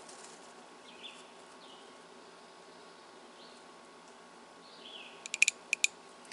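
Faint outdoor ambience with a few short, high bird chirps spread through it, then a quick run of sharp clicks near the end.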